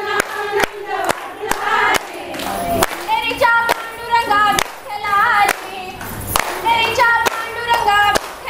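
Group of women singing a fugdi folk song in chorus to steady rhythmic hand clapping. The sung lines come through clearest from about three seconds in.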